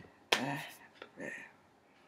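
A woman's soft, wordless vocal sounds: a short one just after the start and another about a second in, with a faint click between them.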